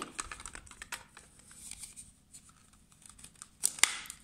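Hard plastic parts of a Tupperware Extra Chef chopper lid being handled and fitted together: scattered small clicks and rubbing, with one sharper click near the end.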